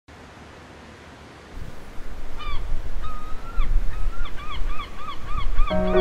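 Gulls calling in a quickening series of short, arching cries over a low rumble. Music comes in near the end.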